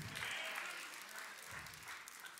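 Faint applause from a congregation, fading away.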